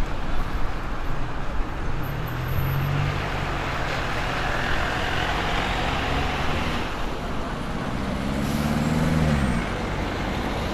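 Road traffic: cars passing close by, one engine note climbing then dropping away near the end, over the running of a single-decker bus moving slowly.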